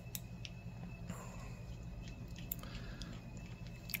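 Faint small clicks and scratches of a small screwdriver working tiny screws out of a digital camera's plastic-framed button circuit board, over a low steady hum.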